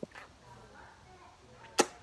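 A single sharp click near the end, much the loudest thing here, with a fainter click at the very start.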